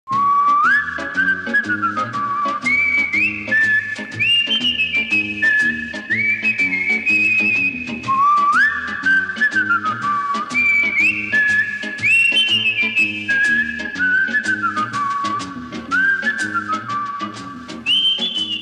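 Opening theme music: a high, whistle-like melody swoops up into each phrase and steps back down, over a bass line and a steady, light percussion beat.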